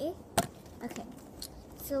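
A single sharp knock about half a second in, followed by a few fainter clicks and taps, with a brief voice sound at the start and speech starting again near the end.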